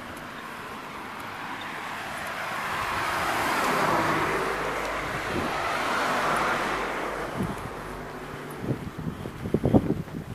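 A small hatchback car driving past close by, its engine and tyre noise swelling over a few seconds and then fading away. Near the end come a few irregular thumps.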